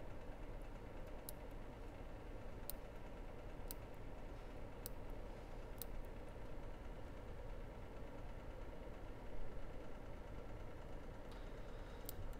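Steady, low background hum, with about five faint light clicks in the first half.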